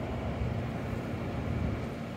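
Steady low rumble of city street traffic and background noise.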